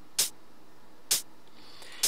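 Programmed hi-hat sample from an FL Studio step-sequencer pattern: two short, crisp hits about a second apart.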